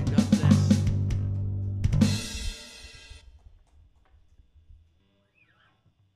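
Live gospel band of piano, pedal steel guitar, bass and drum kit playing the closing bars of a song, with drum hits leading into a final chord and cymbal crash about two seconds in. The chord rings out and fades away over the next few seconds.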